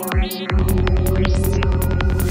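Dark psytrance track at 192 BPM: a fast kick drum on every beat with a rolling bassline between the kicks, and sharp hi-hat ticks above. Near the start the bass cuts out for about half a second under a short rising synth sweep, then the beat comes back in.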